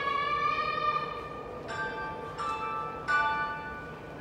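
Electronic bell-like chime playing a short melody as a train arrives at the platform: one held tone, then three struck notes about two-thirds of a second apart.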